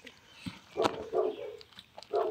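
A dog barking in the background, twice: once about a second in and again at the end.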